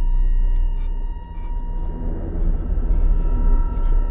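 Deep, steady low rumble with a few faint, thin steady tones above it, a horror-film drone, swelling gently toward the end.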